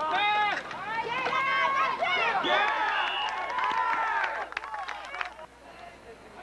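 Several people shouting and yelling over one another on a football field, high-pitched and unintelligible, until about four and a half seconds in. After that it quietens, with a few sharp knocks.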